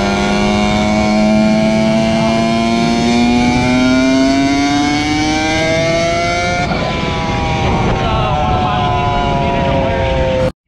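Dirt bike engine running under way, its pitch climbing slowly for about seven seconds, then dropping suddenly and easing down steadily.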